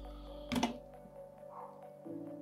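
Quiet background music, with one short plastic click about half a second in as a clip-on ND filter is handled on the drone's gimbal camera.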